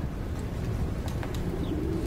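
A bird's soft cooing call over a steady low rumble, the coo coming in about halfway through.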